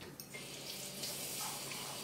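Water being poured from a glass measuring cup, a steady trickling splash that starts a moment in and keeps going.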